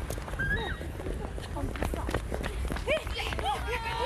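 A group of women shouting and laughing excitedly, with quick footsteps on pavement, over a steady low rumble. The shouts grow more frequent in the second half.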